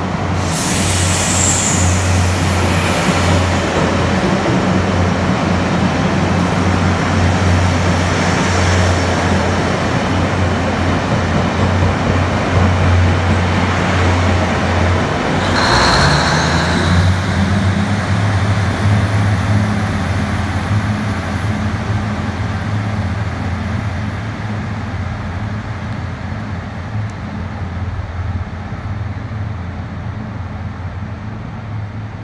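A Taiwan Railways DR3100 diesel multiple unit passing through a station without stopping: its diesel engines hum steadily under the rush of wheels on rail. There is a brief louder burst with a high tone about halfway through, and the sound fades over the last third as the train pulls away.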